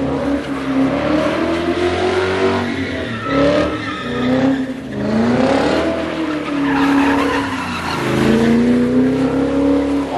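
A sedan doing donuts on a wet road: the engine revs rise and fall several times as the driven wheels spin, with tyre skid noise throughout.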